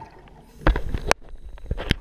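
Water splashing in three sharp bursts, two close together about a second in and a third near the end, over a low rumble.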